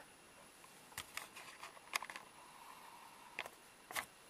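A camera's zoom motor running faintly as the lens zooms out, with a few soft clicks and taps.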